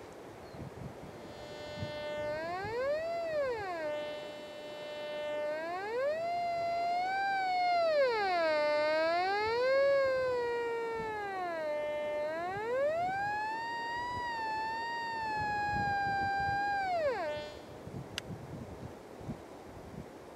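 Nokta Force metal detector in pinpoint mode: a steady tone that rises in pitch and loudness each time the search coil passes over the target and sinks back as it moves off, four swells in all, then cuts off near the end. The highest, loudest point of the tone marks the centre of the target.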